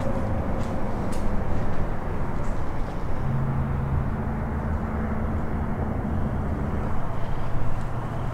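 Steady low rumbling background noise, with a low even hum joining in about three seconds in and fading out near the end.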